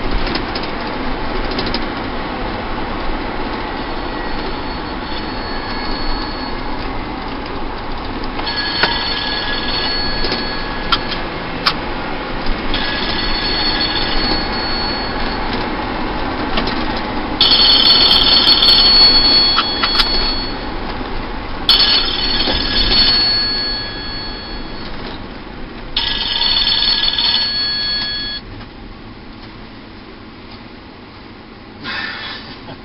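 Steady road and engine noise inside a moving shuttle minibus, with five separate bursts of a high, steady ringing squeal, each two to three seconds long, starting about nine seconds in. The noise drops away near the end.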